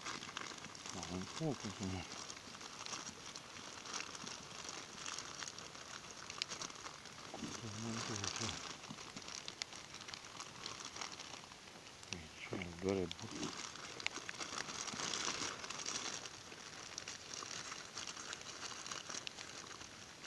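Low, uneven rustling and crinkling of a jacket's fabric rubbing against the microphone, swelling a couple of times, with a few short spoken words between.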